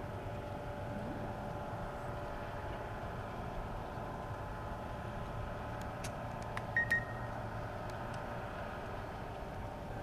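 A steady mechanical hum with a few level tones in it, broken by a few faint clicks and a short high beep about seven seconds in.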